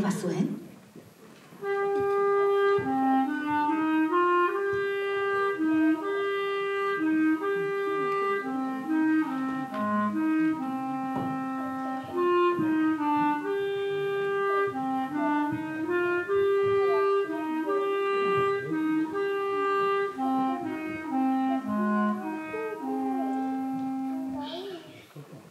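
A single woodwind instrument playing a solo melody of short and held notes, beginning about two seconds in and stopping just before the end.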